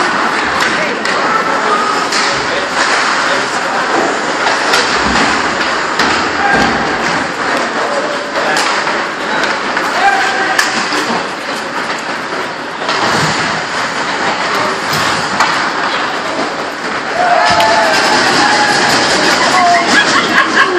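Spectators' voices and calls at an ice hockey game in an ice rink, with scattered sharp knocks of sticks, puck and boards. Nearby voices get louder near the end.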